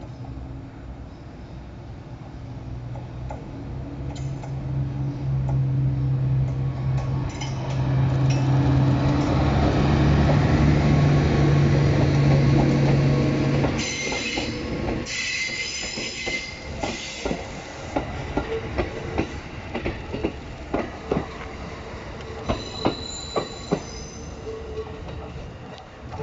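A DD200 diesel-electric locomotive pulling a train away under power: its engine hum builds steadily for about the first thirteen seconds, then drops away. The hauled E233 double-deck Green cars then roll past, their wheels squealing for a few seconds and again near the end, with a run of sharp clacks as the wheels cross rail joints and points.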